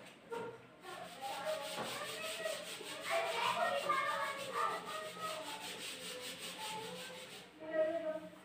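A bare palm wiping marker writing off a whiteboard, with the rubbing of skin on the board in repeated back-and-forth strokes. It stops shortly before the end.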